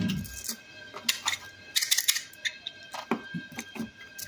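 Items clattering and knocking as a kitchen drawer is rummaged through: a scatter of light clicks and knocks, bunched in two or three short flurries.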